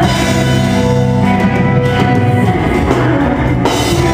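Metalcore band playing live: loud distorted guitars held on low notes over a drum kit, with a bright burst of cymbal-like noise near the end.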